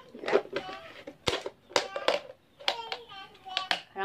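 Thin clear plastic food container and lid being handled and pried open, giving several sharp plastic clicks and snaps.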